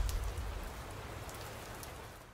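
The dying tail of a logo-reveal sound effect: its low end fades away in the first half-second, leaving a soft crackling hiss with scattered ticks, like light rain.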